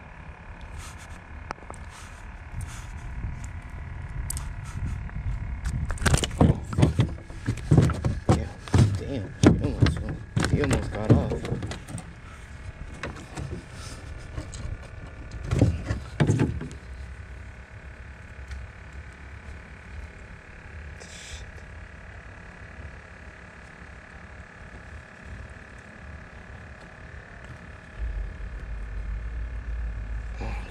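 Close rustling and knocking from clothing and gear handled against a chest-worn camera, with muffled talking. The handling comes in bunches about six to twelve seconds in and again around sixteen seconds, over a low steady hum.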